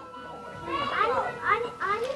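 A young child's high voice in the background, four or so short calls that swoop up and down in pitch, starting about halfway through.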